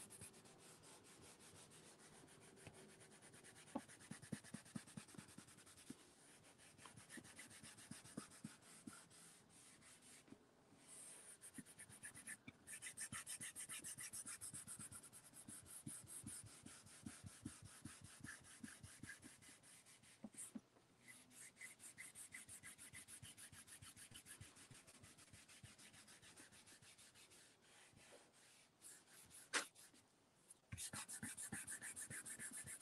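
Faint, irregular scratching strokes of a pencil drawing over the back of a sheet of paper laid on an inked plate, tracing a drawing to transfer the ink as a monoprint.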